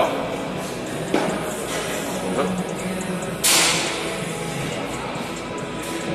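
Busy gym ambience of background music and distant voices in a large room, with a single knock about a second in and a short burst of noise about three and a half seconds in.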